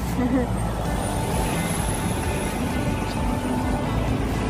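Steady rush of wind buffeting the phone's microphone outdoors, with street traffic noise underneath.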